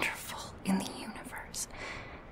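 A woman whispering close to the microphone, soft and breathy.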